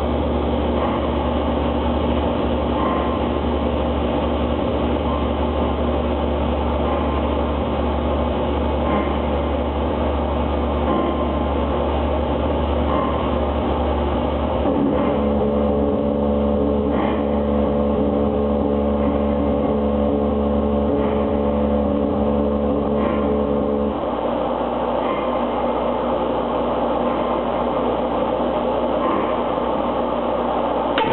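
Live noise-music electronics playing a loud, dense drone of stacked held tones over a low rumble. Fresh tones enter about halfway through, and the low rumble drops out near the end, with faint ticks scattered throughout.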